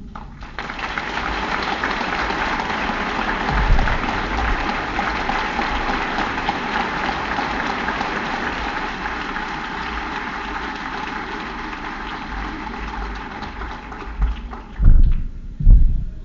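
An audience applauding, a steady dense clatter of many hands that thins out near the end. Just before it stops there are a couple of low thumps.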